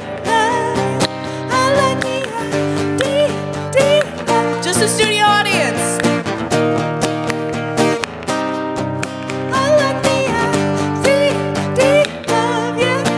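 Acoustic guitar strummed in steady chords, with a woman's singing voice carrying a melody over it.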